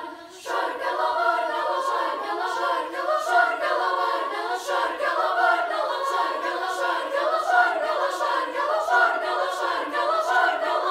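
Youth choir of mostly high girls' voices singing an arranged Lithuanian folk song in parts. The singing breaks off for about half a second at the start, then comes back in.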